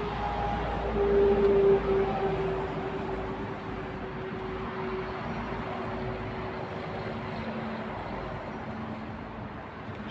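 A steady motor hum from a passing vehicle, loudest a second or two in and then slowly fading away.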